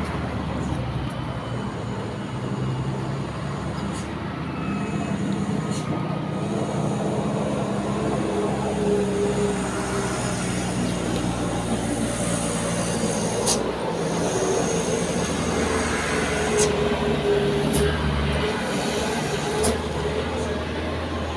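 Steady low rumble of a motor vehicle engine running, with a few sharp clicks now and then.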